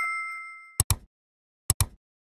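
Editing sound effects for a subscribe-button animation: a bell-like ding rings out and fades. Then come two quick double clicks, like a mouse button being pressed, about a second apart.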